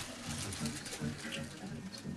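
Faint, low murmur of voices in the hall, with no music playing.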